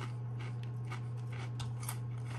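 Mouth-closed chewing of a crisp ridged potato chip: a run of small, sharp crunching cracks. A steady low hum runs underneath.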